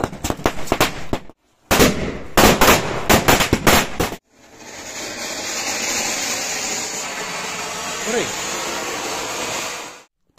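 Firecrackers going off in a rapid string of sharp cracks, in two bursts over the first four seconds. Then an anar, a ground fountain firework, hisses steadily as it sprays sparks.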